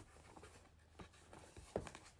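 Faint handling of a plastic mailer package: light rustling with a few soft taps, the clearest a little before the end.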